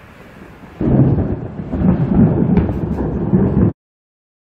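Loud low rumble of thunder that starts suddenly about a second in and rolls on, swelling and fading. It cuts off abruptly near the end.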